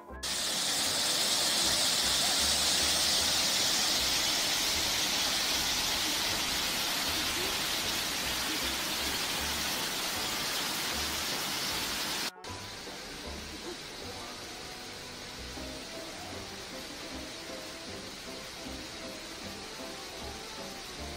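Water rushing through a canal lock's sluices as the lock is worked, a loud steady rush that eases slowly. It is cut off abruptly about twelve seconds in, leaving a quieter background with faint music.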